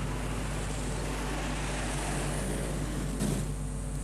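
Road traffic going by, cars and motorcycles, heard as a steady wash of engine and tyre noise, with one brief louder swish of a passing vehicle about three seconds in.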